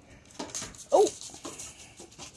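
A dog gives one short, falling whine about a second in, amid a few soft clicks.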